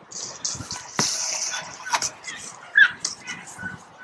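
A soccer ball being played on grass, with a sharp knock about a second in. A short, high, pitched yelp near the end is the loudest sound.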